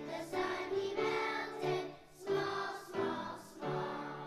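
A choir of second-grade children singing, in phrases of a second or so with short breaks between them.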